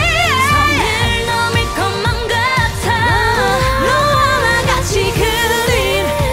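Female K-pop vocal group singing live over a pop backing track with a steady beat, the voices bending and wavering through held notes.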